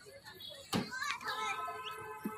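Children playing at a playground: children's voices calling out, with a sharp knock about three-quarters of a second in and a drawn-out child's call in the second half.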